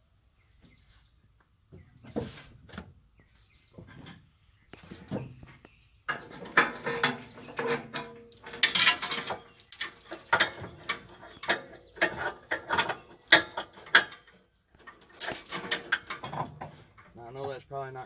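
Steel safety chains being handled and hooked onto a fifth-wheel hitch: links clinking and rattling against the metal hitch in irregular bursts, a few at first and then almost continuously, with brief ringing metal notes.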